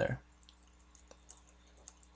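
The end of a spoken word, then near silence with a few faint computer mouse clicks spread across the rest.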